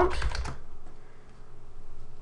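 A quick run of computer keyboard keystrokes, typing a command into the Windows Run box to open a command prompt, then quieter with only a few faint clicks.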